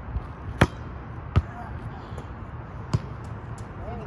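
Volleyball being struck back and forth in a pepper drill: sharp slaps of hands and forearms on the ball, three loud hits and a couple of softer ones at uneven gaps, over a steady low hum.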